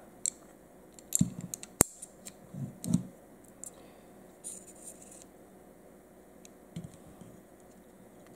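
Metal parts of a partly stripped 1911 pistol being handled on a wooden tabletop. Scattered light clicks and knocks, the sharpest a single metallic click a little under two seconds in, and a short scraping rustle near the middle.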